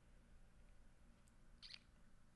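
Near silence: room tone with a low steady hum, and one faint, short, hissy sound shortly before the end.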